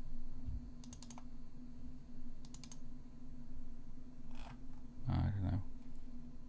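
Sharp clicks from a computer mouse and keyboard in short clusters, about a second in and again at about two and a half seconds, over a steady low hum. A brief murmur from a voice comes near the end.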